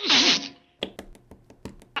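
A cartoon sneeze from the dwarf Sneezy: a loud, noisy "choo" that ends the gasping build-up, followed by a quick run of about seven sharp, light clicks.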